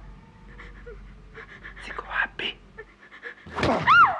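A person's panting and short whimpering gasps, ending near the end in a loud cry that rises and then falls in pitch.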